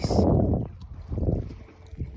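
Low, steady rumble of a boat's Yamaha outboard running at trolling speed, with two bursts of buffeting noise on the microphone, the first in the opening half second and a shorter one just past the middle.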